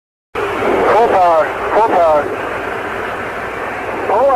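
Narrow, radio-quality transmission with a steady open-mic noise. A voice comes in briefly twice in the first two seconds, its words unclear.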